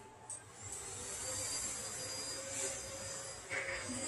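A steady scraping hiss of a marking tool held against the clay sphere, scoring a layout line. A small click comes just before it starts, and it breaks up into sharper scrapes near the end.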